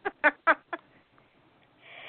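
A person laughing in a quick run of short laugh pulses that die away within the first second, then a faint breathy hiss near the end.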